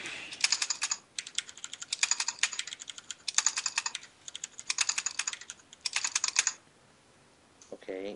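Computer keyboard typing: several quick runs of keystrokes with short pauses between them, stopping about six and a half seconds in.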